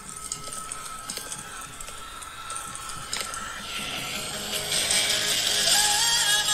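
Music from a TV performance clip played through a phone's small speaker, faint at first and growing steadily louder, with pitched notes coming in over the last second or so.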